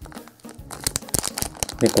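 Thin clear plastic bags crinkling in the hands as they are handled, a rapid run of crackles starting about half a second in.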